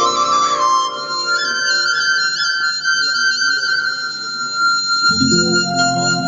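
Transverse bamboo flute (sáo trúc) playing a slow melody with held, wavering notes over a backing track, and a low keyboard accompaniment comes in about five seconds in.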